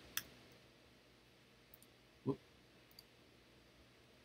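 A single sharp keystroke on a computer keyboard, then quiet room tone with a couple of faint ticks.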